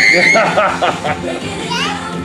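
A young child's high, held squeal of delight that stops about half a second in, then laughter and excited voices as he rides the toy roller coaster car.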